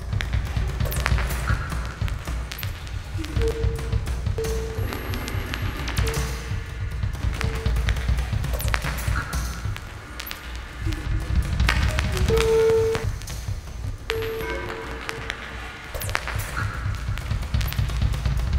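Recorded music with a dense low bass, sharp scattered clicks and taps, and short held mid-pitched tones that come and go.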